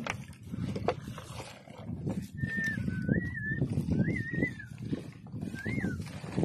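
Rustling and knocking of a fishing net being handled from a small boat, with a couple of sharp clicks near the start. In the second half come three short wavering whistled notes, each a single pitch that wobbles up and down.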